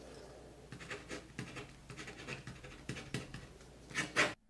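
A pen writing on paper: a quick, irregular series of short strokes, two to four a second, as a percent sign and letters are written.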